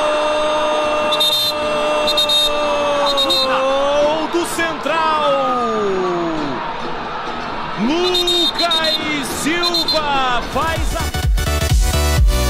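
TV football commentator's long drawn-out goal shout, a single note held for about four seconds over crowd noise, followed by several more shouted, pitch-sliding calls. Electronic dance music with a heavy beat cuts in near the end.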